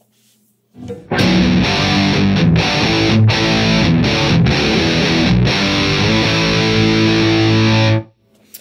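Heavily distorted electric guitar playing a rhythm riff through a high-gain amp, with chugging notes and several short stops. It starts about a second in and cuts off sharply at the end.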